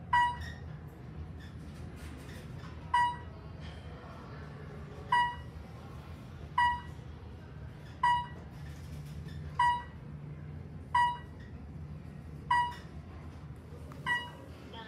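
Traction elevator's floor-passing beep sounding as the car travels up, eight short electronic beeps of the same pitch, about one every one and a half seconds after the first few. A steady low hum of the moving car runs under them.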